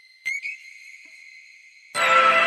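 A high, steady whistle-like tone opens the song. It sounds again with a short upward slide just after the start and then slowly fades. Near the end the full song comes in loudly.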